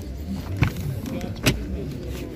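A car's rear door being opened by its outside handle: two latch clicks about a second apart, the second sharper and louder as the latch releases.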